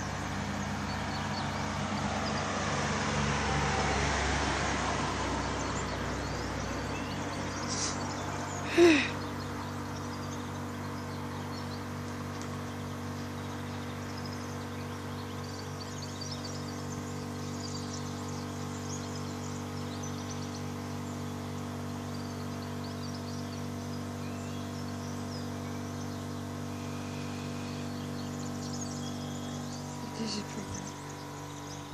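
A car passes along the street below, its tyre noise swelling and then fading over the first several seconds. A short loud sigh comes about nine seconds in. A steady low hum and faint bird chirps run underneath.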